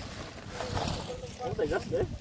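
Lump charcoal tumbling from a plastic sack into a metal grill tray, with the sack rustling, over low wind rumble on the microphone and people talking in the background.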